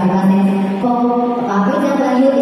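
A woman singing into a corded microphone through a PA in long held notes. The pitch steps to a new note twice.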